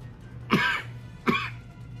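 A man coughing twice: two short coughs about three-quarters of a second apart.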